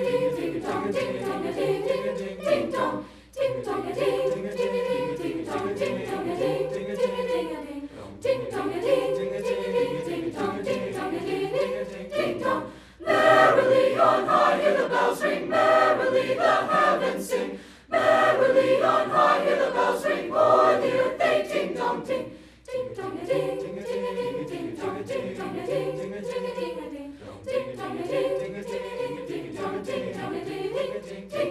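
Mixed high-school choir singing in long phrases with short breaks for breath between them, swelling louder through the middle section before falling back.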